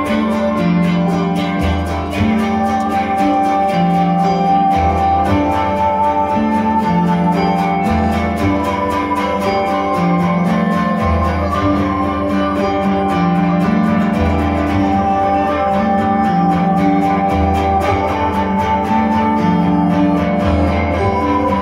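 Live instrumental music: a guitar plays quickly picked notes over a keyboard's held tones, with a low bass figure that repeats about every three seconds.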